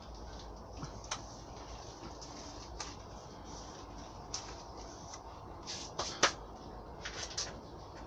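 Hands brushing and pressing compost level across a plastic cell seed tray, faint scraping with scattered light plastic knocks and taps, the loudest two close together about six seconds in.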